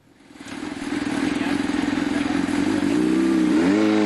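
Honda CBR600 supersport motorcycle's inline-four engine running at high revs on the track, fading in over the first second to a loud, steady note. About three seconds in its pitch dips and climbs again, as at a gear change.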